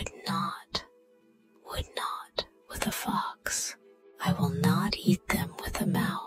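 Whispered and softly spoken reading of rhyming story lines over quiet background music, with a short pause about a second in.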